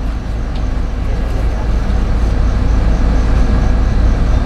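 Steady deep rumble of a coach bus under way, heard from inside the passenger cabin.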